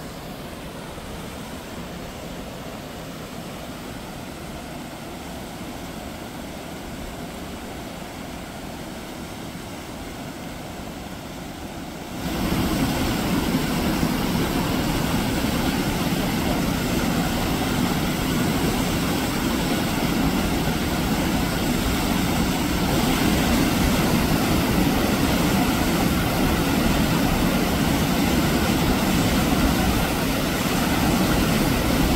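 Waterfall: the steady rush of water pouring over a rock ledge into a pool. It is quieter for the first twelve seconds or so, then suddenly becomes much louder and fuller.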